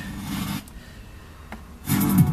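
Car stereo's speakers drop to a faint hiss while the Pioneer head unit is switched between FM radio stations, with a small click about one and a half seconds in. Music comes back just before the end.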